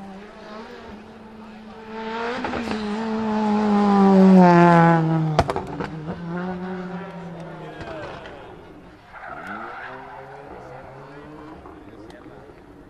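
Rally car engine accelerating hard, its note climbing to its loudest about four and a half seconds in. It is cut by a few sharp cracks as the driver lifts and the revs drop away, then rises again near the end.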